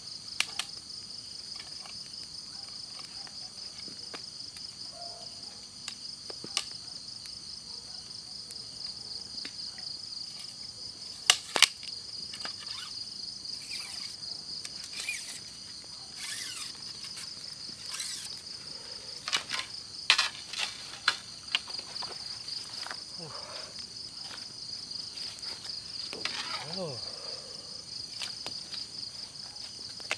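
A steady, high-pitched chorus of crickets trilling in the dark. Scattered sharp clicks and knocks sound above it, loudest in two clusters about a third and two thirds of the way through.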